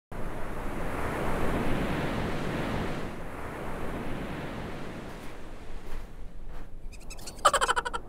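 Rush of ocean surf from a breaking wave, strongest in the first few seconds and fading out about five seconds in. A brief pitched sound comes in near the end.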